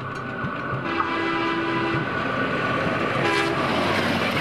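Diesel locomotive hauling passenger coaches, passing close by with a rumble that grows louder from about a second in. A steady horn tone is held for about a second, and a short horn blast comes near the end.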